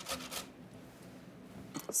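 Tomato rubbed flesh-side down on the large holes of a stainless steel box grater: a few quick grating strokes in the first half second, then only faint room noise.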